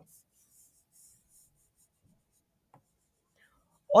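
Pen drawing on an interactive whiteboard: faint, scratchy strokes in the first couple of seconds, with a few light taps of the pen tip.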